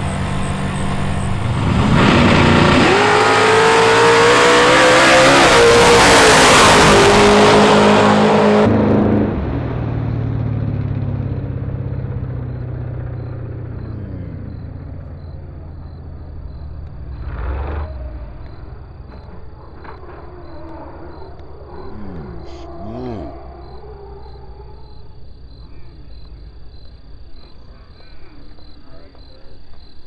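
A drag-racing car's engine at full throttle during a pass, very loud for about six seconds with its pitch edging upward, then cutting off abruptly. After that comes fainter engine noise that slowly dies away, with a single knock partway through.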